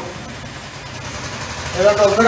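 Street traffic noise with a vehicle engine running, a steady even hum between spoken phrases; a man's speech resumes near the end.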